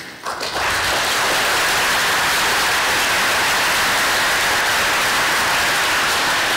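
Audience applauding: dense, steady clapping from a large crowd that starts about half a second in.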